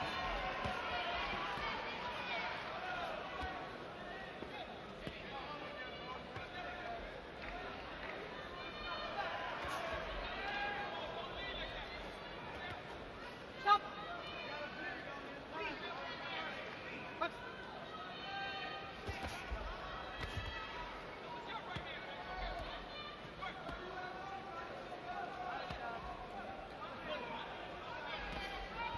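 Arena crowd talking and calling out over a boxing bout, with occasional sharp thuds of gloved punches landing, the loudest about halfway through.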